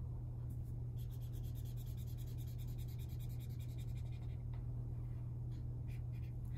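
Red felt-tip marker scribbling on paper in rapid back-and-forth strokes, colouring in a shape, busiest from about a second in until near the end. A steady low hum runs underneath.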